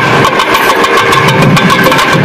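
Nadaswaram ensemble holding a steady note over a drone, with rapid thavil drum strokes keeping the rhythm.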